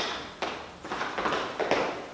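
Trainers tapping and scuffing on a hard floor: several light, quick sideways shuffling steps.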